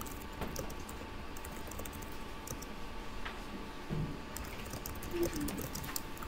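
Computer keyboard typing in irregular runs of quick keystrokes, over a faint steady hum.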